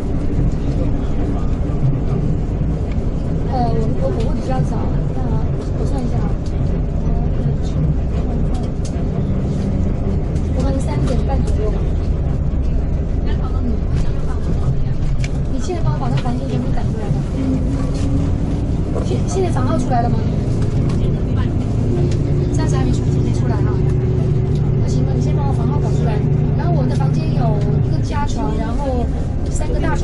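Steady low rumble of engine and road noise inside a moving vehicle's cabin, with quiet voices talking on and off over it.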